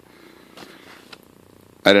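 A domestic cat purring faintly close to the microphone.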